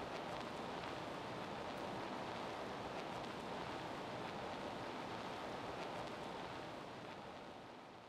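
A faint, steady rushing hiss with no tones in it, fading out near the end.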